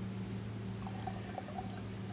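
Faint pouring of dichloromethane into a glass jar of solution, over a steady low hum.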